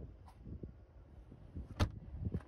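Low handling rumble and light knocks, then one sharp knock near the end: the cargo-floor board dropping back into place over the spare-tire well.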